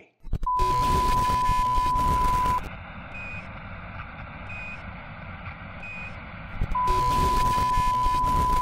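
A TV test-card sign-off effect: a steady single test tone over loud static hiss. Midway the tone drops out for a quieter hiss broken by three short, higher beeps about a second and a half apart, and then the tone and static return.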